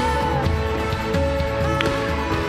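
Live worship band music with a drum kit and cymbals playing along with the band.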